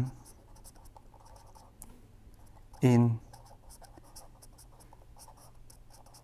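Pen writing on paper: a run of short, faint scratching strokes as words are handwritten, over a steady low hum.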